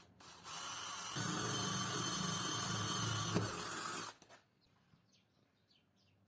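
Cordless drill running a twist bit through the metal jaw of a battery jumper clamp. It starts about half a second in, runs steadily, gets louder as the bit bites about a second in, and stops abruptly after about four seconds.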